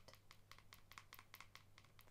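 Fingernails tapping on a plastic Soap & Glory body-mist bottle: faint, quick light taps, several a second.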